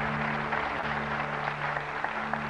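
Studio audience applauding over the game show's music, a steady low held drone.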